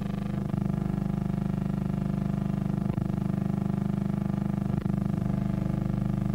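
A steady buzzing drone, unchanging in pitch and rich in overtones, with a few faint clicks.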